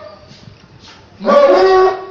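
A brief pause, then a man's voice through a microphone comes back in about a second in with a long, held vocal note.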